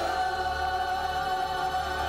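A large choir of young voices singing one long held chord, steady with a slight vibrato.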